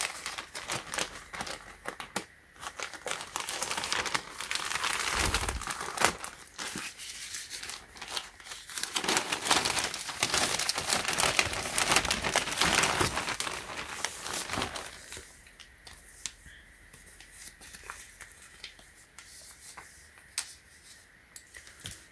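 A plastic poly mailer bag being cut open with scissors, then crinkling and rustling as a hand reaches inside and works the contents out. The crinkling is busy for most of the time and eases to sparse, quieter rustles in the last several seconds.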